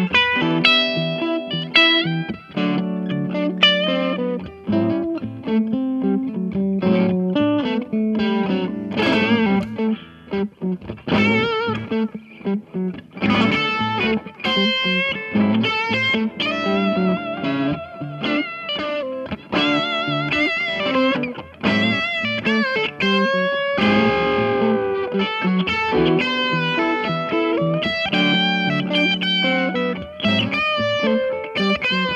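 2009 Fender Custom Shop 1963 Relic Telecaster played through a 1963 Fender Vibroverb amp: single-note lead lines with wavering vibrato and string bends over sustained chords.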